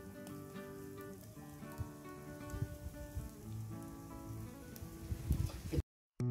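Soft background music over faint, irregular crackling from a charcoal fire grilling whole fish. The sound cuts off abruptly near the end.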